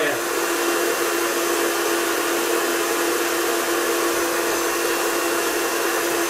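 Hand-held hair dryer running steadily on its cold setting, its nozzle held tight in the valve hole of an exercise ball to blow it up: an even rush of air with a constant hum.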